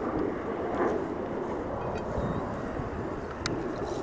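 Steady low rumble of distant engine noise, with a few faint clicks near the end.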